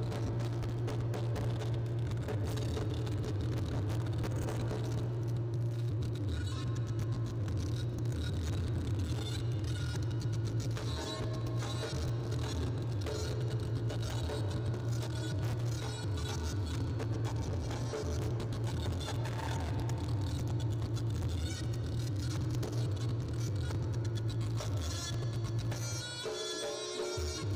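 Reog Ponorogo accompaniment music playing continuously, with dense, rapid drumming over a strong, steady low drone.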